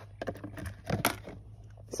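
A few light, irregular clicks and rustles as loose 9mm cartridges are picked up out of the grass and handled.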